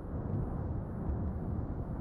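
Steady, low rumbling roar of a volcanic eruption on La Palma, as picked up by a live-stream camera's microphone, while lava fountains from the vent.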